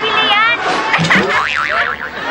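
A cartoon spring 'boing' sound effect: a wobbling tone that wavers up and down several times, starting about a second in, after a short burst of speech.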